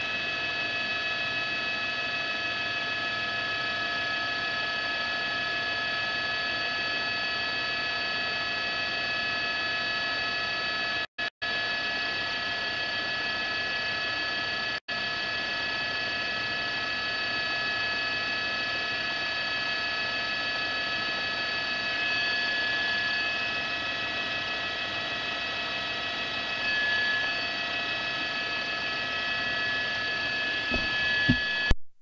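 A steady hum of several fixed high tones, unchanging in pitch, that cuts out for an instant twice about 11 seconds in and once near 15 seconds.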